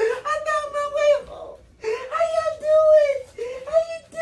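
Small dog whining and howling in long, drawn-out, high-pitched cries, several in a row with short breaks, in excitement at greeting its owner.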